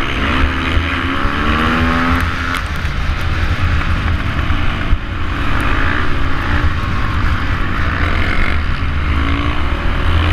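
KTM supermoto engine at race pace, heard from an onboard camera with heavy wind rumble on the microphone. The revs climb over the first couple of seconds, ease and waver through the middle, and climb again near the end.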